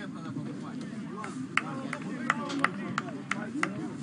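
Footballers' voices calling out on an open pitch, with about half a dozen sharp cracks from about a second and a half in.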